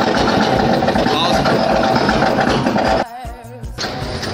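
Loud, steady rumbling noise of an amusement ride in motion, which drops away suddenly about three seconds in.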